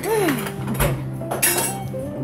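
Cutlery and dishes clinking, a few sharp clicks in the middle, with a short falling vocal exclamation at the very start and background voices.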